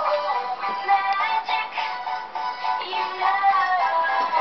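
A recorded song playing, a sung vocal line over instrumental backing.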